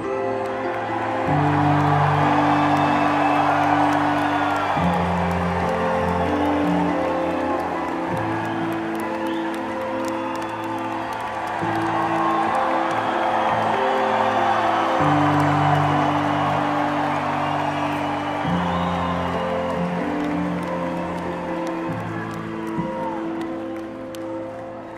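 Slow music of held chords over a bass line that moves to a new note every three to four seconds, with a concert audience's crowd noise and occasional whoops beneath it.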